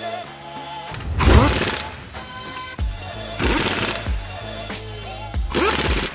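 Pneumatic impact wrench on the wheel bolts of a car wheel, running in three short bursts: about a second in, in the middle, and near the end. Background music with a steady beat plays throughout.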